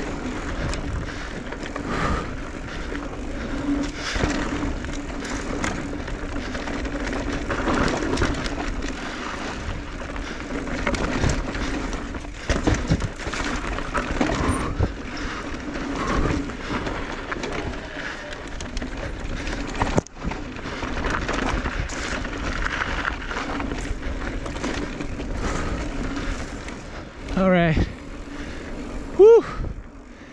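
Electric mountain bike ridden over dry, rocky dirt singletrack: a constant rush of tyres on dirt and wind, broken by frequent knocks and rattles from the bike over rocks, with a low steady hum from the pedal-assist motor.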